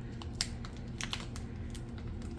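Long press-on fingernails clicking and picking at a small plastic package of game chips as it is worked open: a few scattered, sharp clicks.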